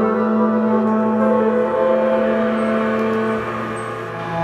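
Live band playing a slow ambient psychedelic instrumental passage: a held low drone note under several sustained higher tones, one of them gliding in pitch.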